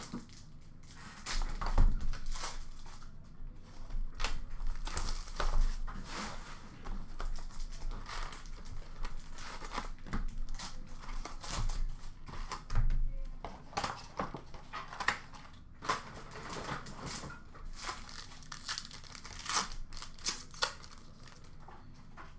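Upper Deck SP Authentic hockey card box and packs being torn open by hand: the wrappers and cardboard crinkle and tear in irregular crackles and clicks.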